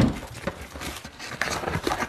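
Small objects and packaging being handled on a table: scattered light knocks, clicks and rustling, with a louder knock right at the start.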